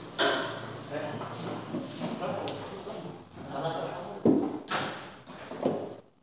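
Indistinct voices in a room, talk too unclear to make out, with a few sudden sharp sounds.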